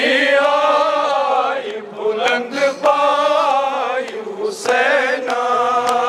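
Men chanting a Shia mourning noha together: a lead voice through a microphone with the group singing along in long, held phrases separated by short breaths. A few sharp strikes cut through the chant.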